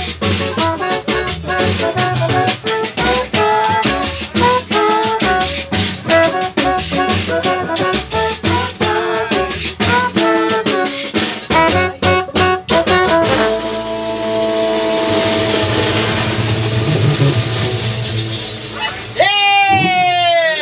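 Live band of harmonica, trombone, electric guitar, double bass, hand percussion and drum kit playing an up-tempo tune with busy drum hits. About 13 seconds in, it ends on a long held chord over a cymbal wash, and a voice shouts near the end.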